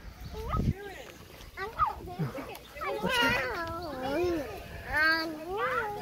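Animal bleating: several pitched, wavering calls, a short one about a second in, a long one through the middle and another near the end.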